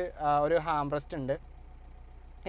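A man talking for about the first second and a half, over a steady low hum. After he stops, only the hum remains.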